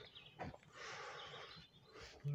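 Faint outdoor ambience: a soft rustle or hiss lasting about a second, with a few faint, high bird chirps.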